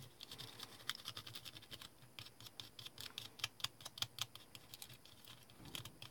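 Faint, irregular scratching and crinkling of aluminium foil as a metal dental tool is rubbed over it, pressing the foil down onto a small model car body.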